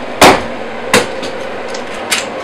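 Two sharp knocks, the first louder and about a quarter second in, the second just under a second in, over a faint steady hum.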